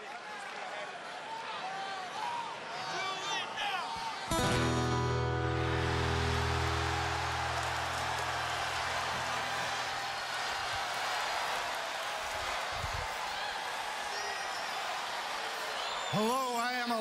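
Arena crowd cheering and whooping. About four seconds in, a loud guitar chord strikes and rings, slowly fading, as wrestling entrance music begins over the continuing crowd noise.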